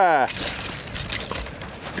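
The tail end of an excited shout, then wind and water noise with a few light knocks as a fish is lifted aboard in a landing net.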